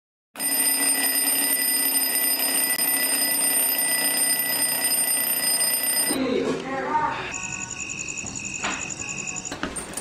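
An alarm clock ringing steadily for about six seconds, then cutting off suddenly. After it comes a rapid electronic beeping with a single click partway through.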